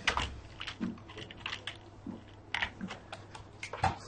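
Typing on a computer keyboard: a run of fairly quiet, irregular keystrokes with a brief pause about halfway through, as a short line of code is typed.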